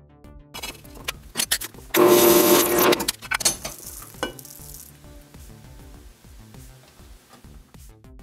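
Background electronic music with a short, noisy burst of metal scraping and clatter, about a second long, starting about two seconds in, with lighter clicks and hiss around it.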